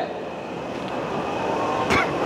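Steady indoor background hum and hiss of a shopping mall, slowly growing louder, with one short click near the end.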